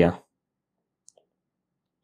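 A man's spoken word trails off at the start, then near silence with one faint click about a second in.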